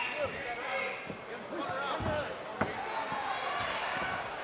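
Several voices shouting over one another at a cage fight while two fighters clinch against the cage, with a sharp thump about two and a half seconds in.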